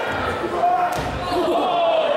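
A wrestler's body slamming onto the wooden gym floor, one thud about a second in, over crowd voices and shouts.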